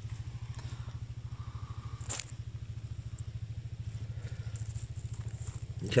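Engine idling steadily with a fast, even low pulse, and one sharp click about two seconds in.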